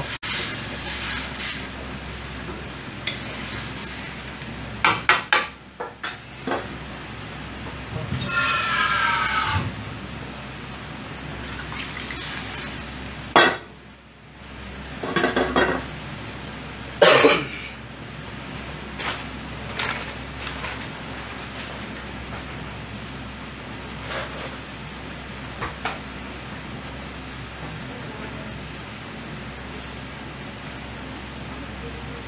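Steady hiss of a gas burner under a frying pan of jjamppong broth simmering on the flame, broken by scattered sharp clinks and knocks of a utensil against the pan. A brief rising squeal comes about eight seconds in, and there are two louder short sounds near the middle.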